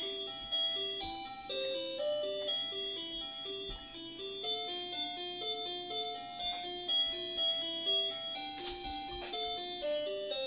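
Simple electronic tune in plain, chime-like tones: a low line of short alternating notes, about two a second, under a slower held melody. A couple of soft knocks sound near the end.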